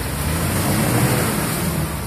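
Mitsubishi Pajero's engine running steadily under load in low-range four-wheel drive, with its tyres churning in mud and slush while the vehicle is stuck.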